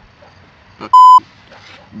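Censor bleep: a single short, loud 1 kHz tone about a second in.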